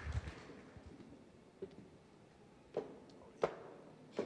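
Quiet room tone broken by a few faint, sharp knocks, the last ones about 0.7 s apart in the second half.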